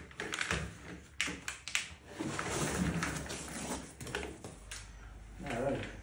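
Handling noise from unpacking a fibre laser head from a wooden crate: rustling of foam packing and a run of short knocks and clicks as the metal head and its cable are lifted out.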